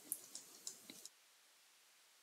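About five faint clicks in the first second from handwriting being entered on a computer screen.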